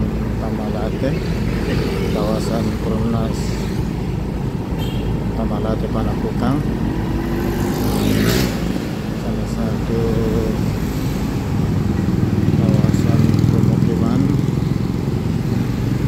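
Steady engine and road noise of riding through busy town traffic, with motorcycles and cars passing; an oncoming car rushes past about halfway through. Indistinct voices come and go over the traffic.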